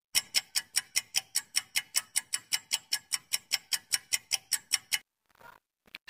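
Countdown-timer clock ticking sound effect: rapid, even ticks, about five a second, that stop suddenly about five seconds in.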